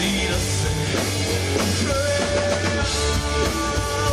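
A rock band playing live: drum kit, electric guitar and bass, with held notes over a steady beat.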